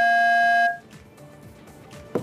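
Loud, steady electronic beep tone with a buzzy, many-overtone edge, cutting off abruptly less than a second in. Low background hiss follows.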